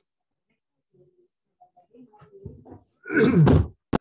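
Movement noises as a man rises from an office chair: faint shuffling, then a loud creaking rustle lasting under a second about three seconds in, and a single sharp knock just before the end.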